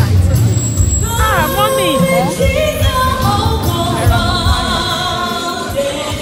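Church choir singing live over a drum beat. The voices slide in pitch about a second in, then settle into long held notes.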